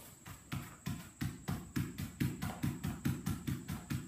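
A hard rubber lacrosse ball hitting in a quick, even rhythm, about three hits a second, as it is bounced off the turf and caught by hand.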